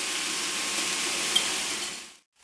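Diced marinated chicken with chopped onion sizzling steadily in olive oil in a frying pan, fading out at the very end.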